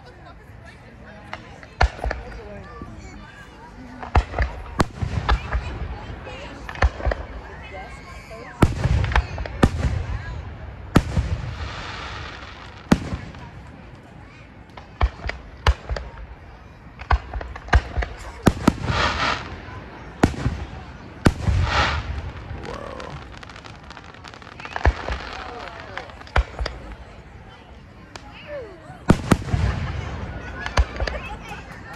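Aerial fireworks shells bursting overhead in a long series of booms and sharp bangs, sometimes several in quick succession, with the loudest clusters about nine, nineteen and twenty-two seconds in.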